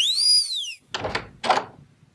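A whistle-like sound effect that sweeps up in pitch and falls away. Then a door opens and closes: two sounds about half a second apart.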